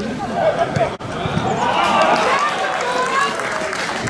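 Several men's voices shouting over one another on a football pitch, loudest in the middle, after a brief drop in sound about a second in.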